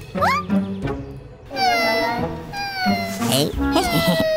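High-pitched wordless cartoon-character vocal calls, several short gliding exclamations, over background music.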